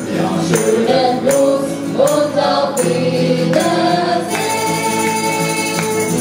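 A live acoustic band playing: women singing over strummed acoustic guitars, with a tambourine struck on the beat about every three-quarters of a second.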